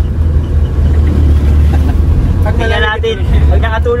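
Steady low rumble of a jeepney's engine and road noise, heard from inside its open passenger cabin while it moves.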